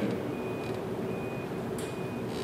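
A single high electronic beep repeating about once a second, each beep short and even in pitch, over a low steady room hum; a sharp click near the end.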